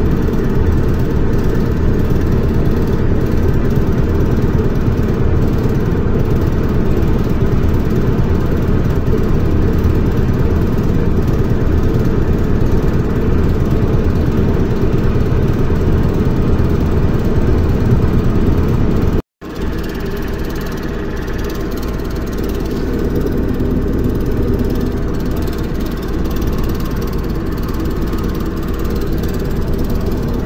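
Running noise of an ER2R electric multiple unit heard inside the carriage: a steady, loud rumble of wheels and running gear on the track. About two-thirds of the way through the sound cuts out for a moment and comes back as a slightly lower, steadier rumble.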